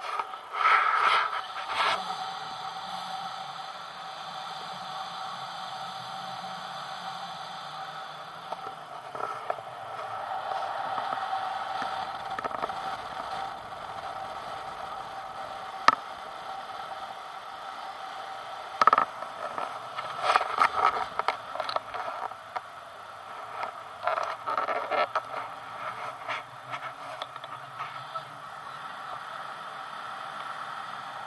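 Wind rushing over an action camera on a selfie stick in paraglider flight, a steady hiss. Bursts of scraping and rubbing from the mittened hand gripping the pole come at the start and again from about two-thirds in, with one sharp click in the middle.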